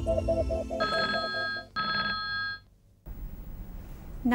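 Telephone ringing twice in two short bursts, each just under a second, over the tail of an electronic title-theme music loop with a quick repeating pattern that fades out. A moment of silence follows, then faint studio room tone.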